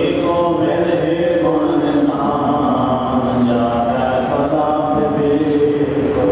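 Group of voices chanting together in unison, a steady devotional recitation with long held notes that shift slowly in pitch.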